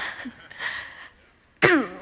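A woman laughing breathily, her voice hoarse and mostly gone with a cold, in short noisy bursts, ending in a falling vocal sound near the end.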